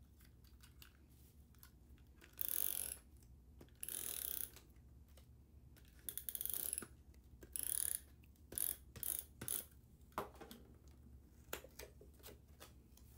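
A handheld adhesive tape runner pulled across a paper card panel in about six short strokes, each about half a second long, laying down glue tape with a ratcheting sound.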